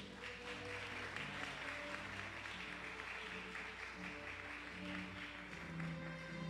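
Congregation applauding with light, steady hand clapping, over soft background music with sustained low notes.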